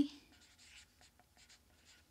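Felt-tip marker writing on a paper plate: faint, short scratchy strokes as the letters are drawn.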